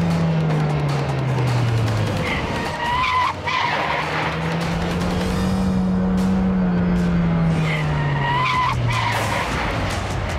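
Car driven hard, its engine note falling in pitch, then a short tyre squeal about two and a half seconds in. The same falling engine note and squeal come again near the end. Background music plays underneath.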